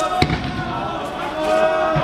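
A single sharp bang with a low thud right after it, about a quarter second in, over a crowd's shouting voices.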